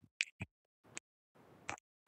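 A few short, faint clicks, unevenly spaced, with dead silence between them.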